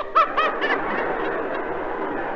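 A few short, high vocal cries, then a theatre audience laughing in a dense, even wash of sound. It is an old 1933 live recording, so the sound is narrow and dull, with nothing above the mid treble.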